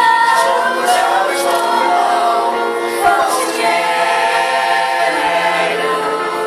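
Small women's choir singing together, holding long notes in several voices, with crisp sibilant consonants between phrases.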